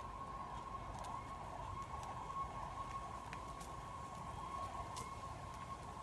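A steady high-pitched whine that holds one pitch throughout, with a few faint ticks under it.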